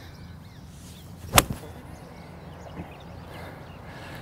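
An iron club striking a teed golf ball once, one sharp impact about a second and a half in, with the clubhead driving through the front tee and the turf.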